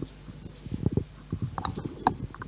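Microphone handling noise: irregular low thumps and rumbles with a few sharp clicks as a handheld microphone is picked up and adjusted at a lectern. The loudest thumps come about a second in and again just at the end.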